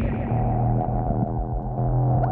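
Blippoo Box and Benjozeit Twin Peak Resonator synthesizers playing a steady low electronic drone of several held tones stacked on top of each other, with faint flickers above.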